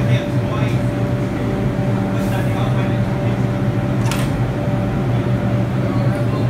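Steady electrical hum of an R142 subway train standing at the platform, with a low drone and a thin steady tone from its motors and air-conditioning equipment. A single sharp click comes about four seconds in.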